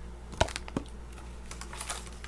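A few light clicks and taps from small cosmetic samples and their packaging being handled, the sharpest about half a second in and a quick cluster near the end, over a low steady hum.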